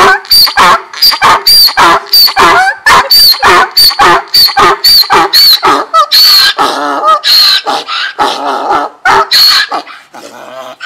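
Donkey braying loudly: a rapid run of calls, about three a second, that turn into longer, slower calls in the second half and stop just before the end.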